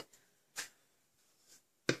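Mostly quiet room tone with light handling of a folded card-stock gift card holder: a faint brush about half a second in and a short tap near the end.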